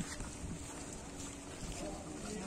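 Wind on the microphone, a steady low rumble, with faint voices in the background.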